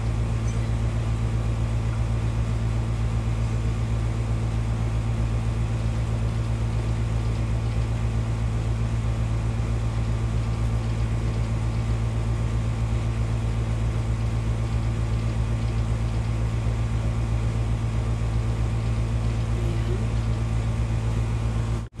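Steady low hum with an even background hiss, unchanging throughout, cutting off abruptly at the very end.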